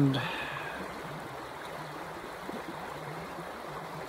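Creek water running steadily, an even rush with no breaks.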